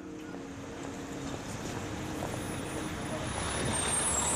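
A steady rushing noise, like a running vehicle or street traffic, swelling gradually louder as a sound effect. Under it, a low held musical drone fades out about a second in.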